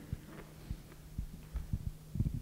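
A steady low electrical hum from the microphone and sound system, with several soft low thumps scattered through it.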